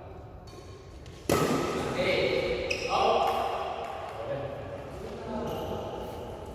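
Badminton rally: racket strikes and court sounds with men's voices calling out, loudest from about a second in.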